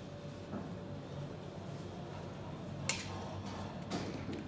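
Low steady hum of a quiet elevator cab, with a sharp click about three seconds in and a smaller one near the end, from a key card tapped on the card reader and a floor button pressed.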